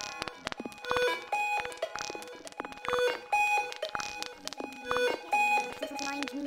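Sparse electronic music passage: short synth beeps at a few pitches repeat in a pattern about once a second over light clicking percussion, with no bass.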